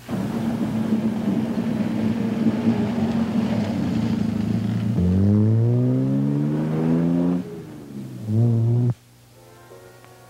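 Car engine running, then accelerating in a long rising surge and a second shorter one; the sound cuts off suddenly near the end.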